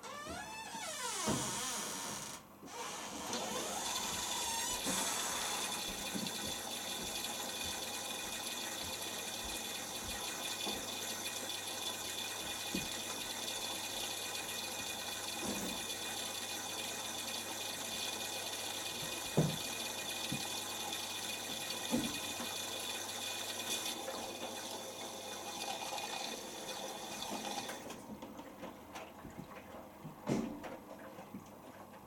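Miele Professional PW6055 washing machine taking in water for its prewash: a steady rush of inlet water starts at once, breaks off briefly about two seconds in, and stops a couple of seconds before the end. Under it the drum tumbles the cotton load, with a few soft thuds as the laundry drops.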